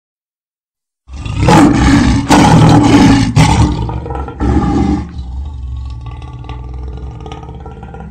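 A lion roaring loudly in several long surges starting about a second in, then going quieter for the last three seconds before cutting off.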